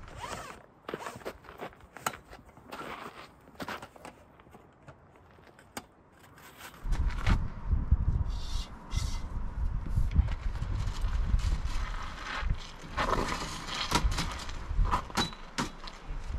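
Folding camp cot being set up: scattered clicks, scrapes and rattles of its metal frame and fabric as the end bars and legs are worked into place. About seven seconds in, a low rumble comes in under the clicks.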